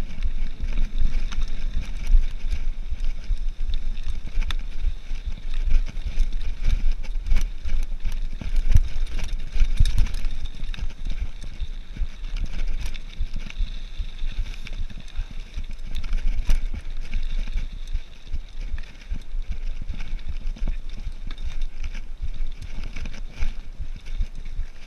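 Cannondale Trail 7 hardtail mountain bike coasting down a rough dirt and gravel trail: tyres crunching over stones and the bike rattling over bumps in many quick clicks, with wind rumbling on the camera microphone.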